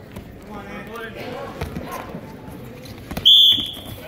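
A referee's whistle blown once near the end, a shrill steady high note of about half a second that stops the wrestling, louder than the voices in the gym.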